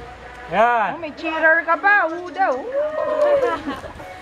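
Onlookers' drawn-out wordless cries of encouragement, several voices one after another, each rising and falling in pitch, with a longer held cry near the end.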